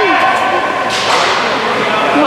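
Ice hockey skates scraping on the rink ice, with a sudden sharp hissing scrape about a second in that fades away over the next second.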